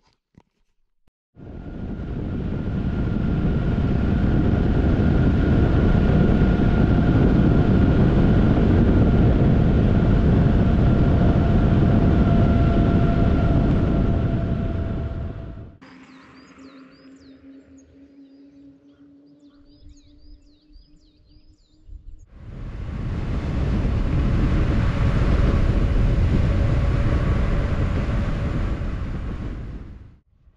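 Loaded touring bicycle rolling along a paved road: tyre hum and wind rushing over the microphone, building up and fading away in two long stretches with a much quieter gap in the middle.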